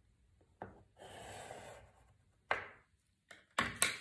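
A pencil drawing a line along a plastic ruler on pattern paper, one scratchy stroke of under a second, followed by a sharp knock and a quick run of clicks as the ruler and pencil are handled on the table.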